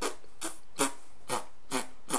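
A man's voice making short closed-mouth 'um' throat pushes, four of them at about two a second, each with a puff of breath. It is a throat-push exercise for didgeridoo breathing, done without the instrument.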